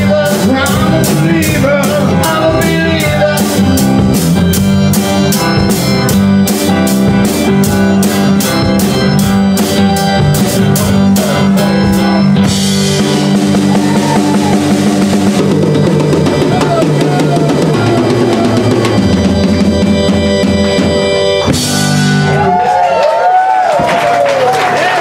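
Live rock band (drum kit, electric guitar and bass) playing with a steady, even beat on the cymbals. A long cymbal crash comes about halfway through, and a last crash near the end closes the song.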